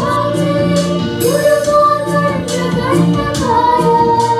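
Girls singing together into microphones, holding long notes that glide from one pitch to the next.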